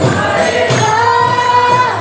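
Devotional kirtan: voices singing long held notes, the melody stepping up about a second in, over jingling hand percussion.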